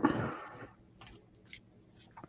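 A short rustling noise, then a few faint clicks: small handling sounds at a desk.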